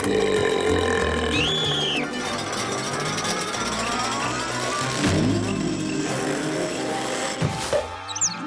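Cartoon soundtrack music with comic mechanical sound effects for a chain-reaction contraption of rolling coconut, hamster wheel, pulleys and gears. There is a whistle-like glide that rises and then dips in the first two seconds, and a sharp stroke about five seconds in and another near the end.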